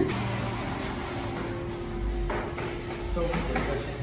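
Indistinct voices and faint background music in a room, with a short thump at the start.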